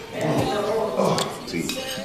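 Forks and cutlery clinking against plates as people eat, with a few sharp clinks about a second in and near the end, over low voices.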